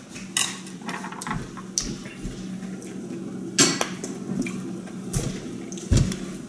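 Kitchen clatter: a handful of sharp ceramic clinks and knocks as dishes and a ceramic teapot are handled, with a few dull thumps between them. A steady low hum runs underneath.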